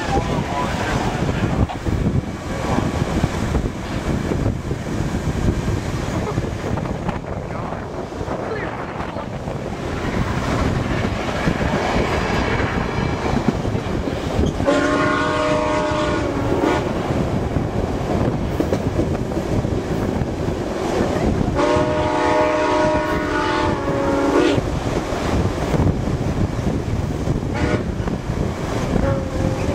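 Passenger train running at speed, heard from an open car window: a steady rush of wheels on rail and wind. About halfway through, the locomotive sounds two long multi-note chime blasts several seconds apart.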